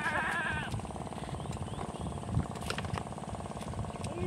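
A goat bleats once right at the start, a short wavering call. Under it a small engine runs steadily with a low rumble.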